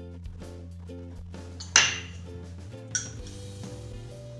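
Background music with a steady repeating note pattern. A metal spoon clinks sharply against kitchenware about two seconds in, and more lightly about a second later.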